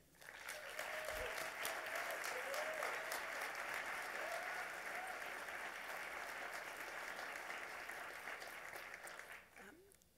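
Audience applauding: a dense, steady clatter of many hands clapping that fades out about a second before the end.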